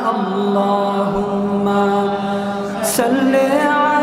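A man chanting a Bengali devotional song in praise of the Prophet (a sung durud), drawing out long, held melodic notes.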